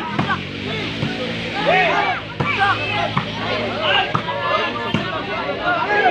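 A large outdoor crowd of spectators shouting and chattering during a volleyball rally, with several sharp knocks, about a second apart, as the ball is struck. A steady low drone runs under the voices for the first half.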